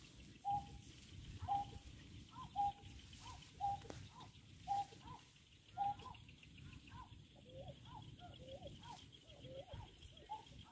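Greater painted-snipe calls: short hooting notes repeated about once a second, becoming irregular and lower in pitch in the second half.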